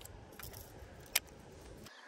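A few light metallic clicks and clinks from a hard-bodied lure and its treble hooks knocking against a baitcasting reel held in the hand, one right at the start and one a little past a second in, over a faint steady background.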